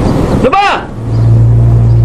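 A brief voice-like call with a rising and falling pitch, then a steady low rumble, like a running vehicle engine, starts about a second in.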